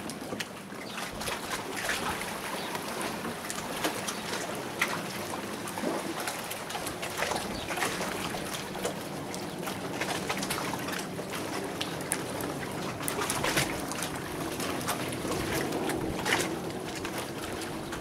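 Fillet knife cutting through a fish on a wooden board, with irregular scrapes and clicks, over a steady wash of water noise.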